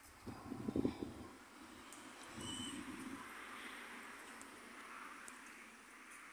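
Faint rural outdoor ambience with a short, high bird chirp about two and a half seconds in and a few soft low sounds near the start.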